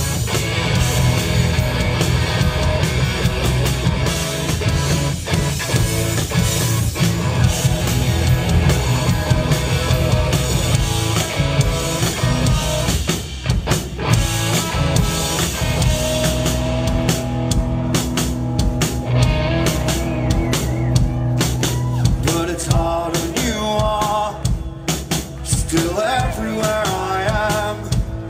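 Live rock band playing an instrumental passage on electric guitar and drum kit. The cymbals thin out after about halfway, leaving held guitar notes ringing over the drums.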